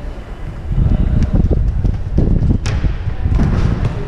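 Running footsteps thudding on a gym floor, mixed with a loud rumble of wind and handling noise on a moving action camera's microphone.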